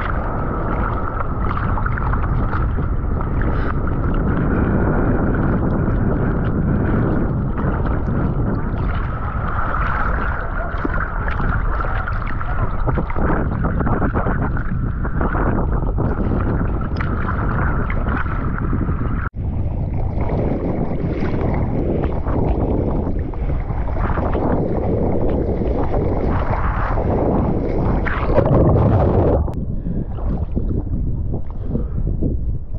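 Sea water sloshing and splashing around a paddling surfer on a surfboard, with wind buffeting the camera microphone close to the water. There is a sudden brief break about two-thirds of the way through.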